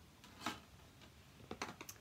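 A few faint, short clicks: a single one about half a second in and a quick run of them near the end.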